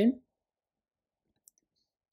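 A single faint computer mouse click about a second and a half in, after the last syllable of a spoken word and otherwise near silence.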